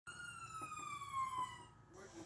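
A VCR's whine, sliding steadily down in pitch for about a second and a half and then cutting off suddenly, with a few faint clicks.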